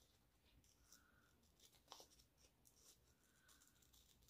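Near silence, with a few faint snips of small scissors cutting out a contact-paper decal, the clearest about two seconds in.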